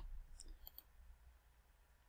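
Near silence with a few faint clicks in the first second, from a computer mouse being clicked to change slides.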